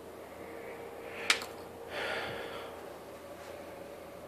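A man's breathy exhale about two seconds in, after a single sharp click about a second in, over a faint steady hum.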